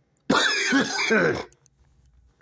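A man coughing, a short run of about three coughs over about a second, from a cold he has caught.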